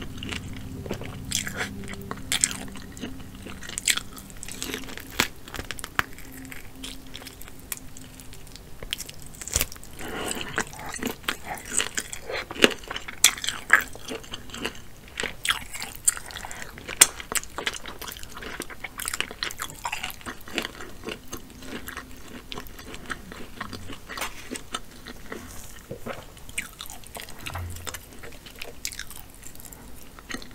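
Close-miked chewing and biting of seafood-boil shellfish meat, with wet mouth sounds and many irregular sharp clicks, loudest in a cluster in the middle. Fingers pull meat from the shell in the sauce.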